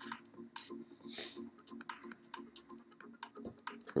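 Rapid, irregular clicking of a computer keyboard and mouse over a low, steady hum.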